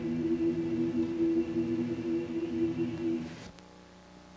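Choir holding a long sustained chord that cuts off abruptly about three and a half seconds in, leaving only a faint steady hum.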